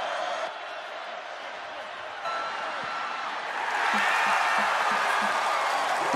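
Stadium crowd noise, a steady din of many voices that swells louder about four seconds in as the play develops.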